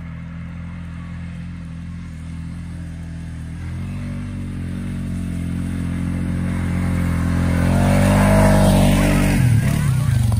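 ATV engine running as the quad drives across a field, growing steadily louder as it comes closer, with the engine note rising near the loudest point. The sound changes abruptly just before the end.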